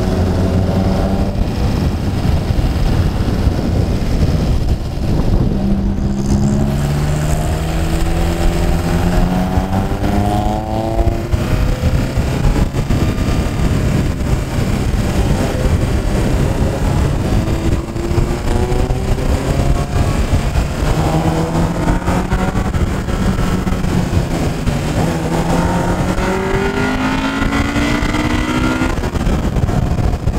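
1999 Honda Civic's engine pulling up through the gears, its pitch climbing over several seconds and dropping at each upshift, three times, over steady wind and road noise.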